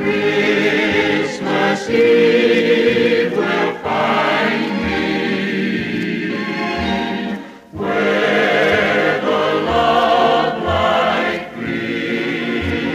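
Music: a 1950s choral recording, a choir singing with instrumental backing, with a short breath between phrases about seven and a half seconds in.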